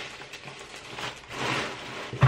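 Soft rustling of paper as the pages of a book are handled, swelling briefly about one and a half seconds in.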